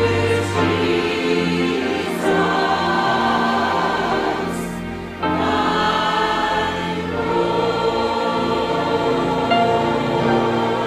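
Mixed church choir of men and women singing a hymn in sustained, many-voiced phrases, with a brief breath and fresh entry about five seconds in.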